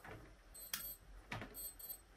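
Faint electronic alarm beeping in quick pairs of short high beeps, with two sharp clicks before the beeps return.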